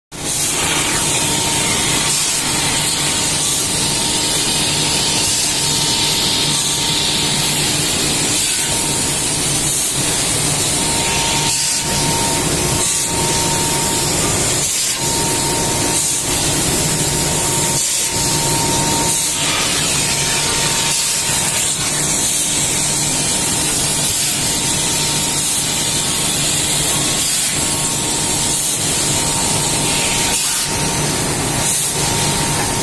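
Loud, steady workshop machinery noise with a strong hiss, a low hum underneath and a faint thin tone that comes and goes.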